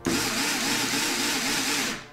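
Small cordless electric screwdriver running for about two seconds, driving a screw into the motor plate on a quadcopter frame's carbon-fibre arm. It starts and stops abruptly.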